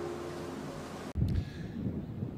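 Faint steady film-soundtrack background hum, then an abrupt cut about a second in to outdoor phone-microphone sound: a brief low rumble of wind buffeting the microphone, then low wind noise.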